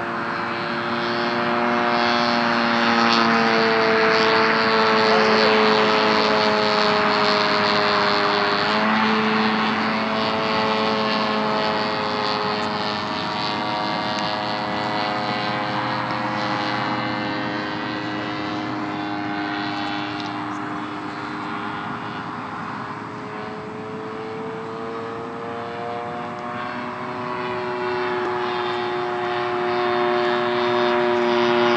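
Propeller-driven fixed-wing UAV flying overhead: a steady engine and propeller drone whose pitch drops about nine seconds in and climbs again near the end.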